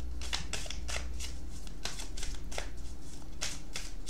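A tarot deck being shuffled by hand: a run of quick, irregular card clicks and flicks.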